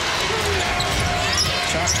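Basketball being dribbled on a hardwood court under steady arena crowd noise.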